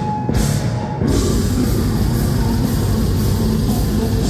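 Live death metal band playing loud: distorted guitars and bass over a drum kit. After a few sharp cymbal hits, the full band comes in about a second in.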